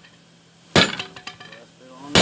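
One heavy hammer blow on a red-hot steel bar lying on an anvil, less than a second in, followed by a short metallic clink and ring. The blows fall in a slow steady rhythm, about one every second and a half, as the bar is forged.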